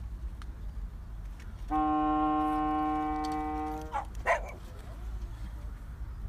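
A long straight ceremonial horn blown once: a single steady note held for about two seconds. It is followed shortly by a brief, sharp sound.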